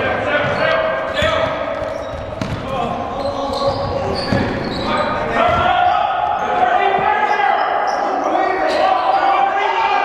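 A basketball bouncing on a hardwood gym floor during play, with the voices of players and spectators echoing in the large gym. The voices grow louder about halfway through.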